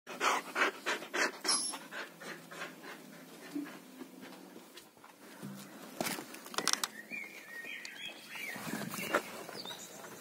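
Samoyed panting rapidly with its mouth open, about three breaths a second. The panting is loudest in the first couple of seconds and then grows fainter.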